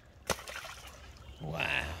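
A stuffed toy thrown off a dock hits the water with a single brief splash about a third of a second in.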